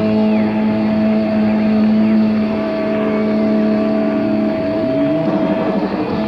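Live hard-rock band with a distorted electric guitar holding one long sustained note for about four and a half seconds, then bending away from it near the end.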